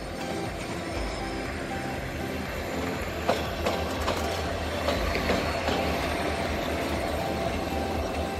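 A diesel locomotive running light at low speed on shunting moves, its engine running steadily as it passes close by. A few sharp wheel clicks on the track come between about three and five and a half seconds in.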